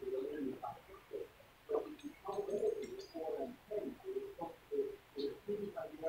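Birds cooing: a run of short, low coos, several a second, with a few faint high chirps about two to three seconds in.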